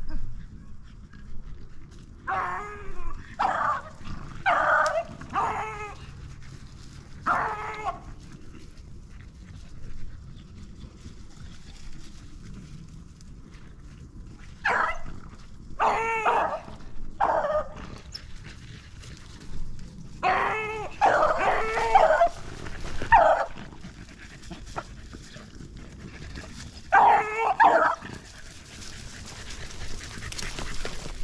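Beagles baying in short clusters of calls with pauses between, as the hounds run the trail of the shot rabbit; the calls grow louder in the second half as the dogs close in.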